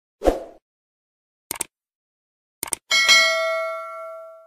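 Subscribe-button animation sound effects: a brief low whoosh, two quick double clicks like a mouse click, then a bell ding that rings on and fades out.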